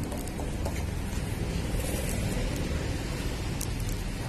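Parathas cooking on a large flat iron griddle: a steady hiss of oil frying over a continuous low rumble, with a few light clicks of a metal ladle on the griddle.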